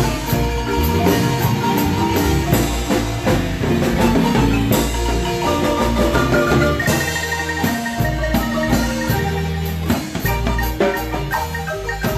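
Marimba played by three players at once in a Guatemalan son: fast rolled melody notes over a steady low bass line.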